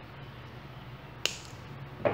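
A single sharp snip of small scissors cutting through an artificial flower's stem, about a second in, over a steady low hum.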